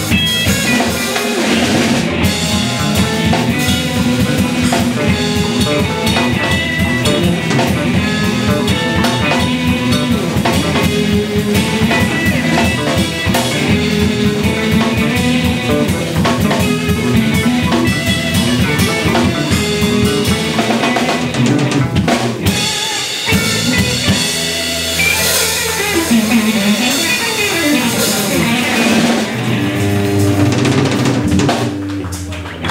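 Live blues trio playing: electric guitar, electric bass and drum kit, with a busy drum rhythm and a short break about three-quarters of the way through.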